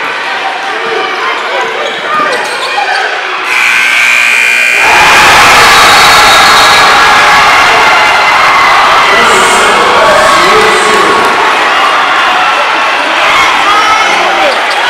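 Basketball gym sounds: a ball bouncing and shoes squeaking under crowd chatter. About three and a half seconds in, the scoreboard buzzer sounds for over a second at the end of the game. Then the crowd erupts into loud cheering and yelling that lasts almost to the end as the winning team celebrates.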